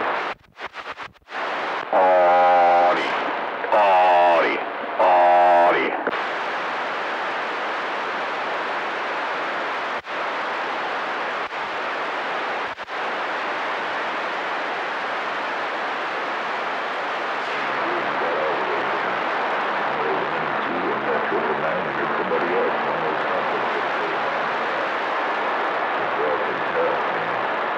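CB radio receiver on channel 28 hissing with steady band static, with faint skip signals wavering underneath. Near the start the signal cuts in and out, then three loud wavering pitched sounds of about a second each come through.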